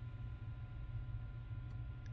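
Quiet room tone: a faint steady low hum with two thin, steady higher tones above it, and no distinct sound event.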